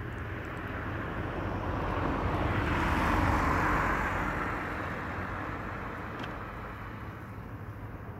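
A passing vehicle: a smooth rush of noise that swells to a peak about three seconds in, then fades away.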